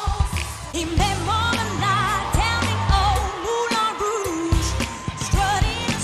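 Pop song performance: a woman sings a melody with vibrato over a band track with a steady, heavy beat.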